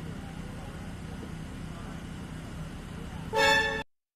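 Steady low background hum, then about three seconds in a loud, short horn-like toot lasting about half a second that cuts off abruptly.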